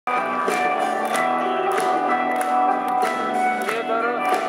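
A rock band playing live, heard from the audience in an arena: sustained chords over a regular beat of short hits, about one every 0.6 seconds.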